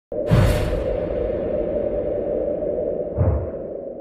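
Intro sound effect: a whoosh with a deep hit, then a steady low drone. A second deep hit swells up about three seconds in, and the drone fades out near the end.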